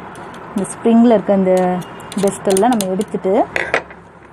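A person's voice talking in short phrases.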